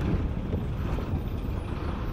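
Steady rumble of a moving bus, engine and road noise heard from inside the bus.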